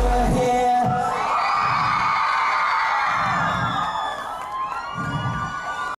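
A live band's last chord cuts off within the first second, then a crowd of young fans screams and cheers, shrill and sustained, easing slightly near the end.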